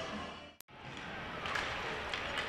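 Faint hockey arena ambience: crowd and rink noise that fades, cuts out for an instant about half a second in at an edit, then comes back.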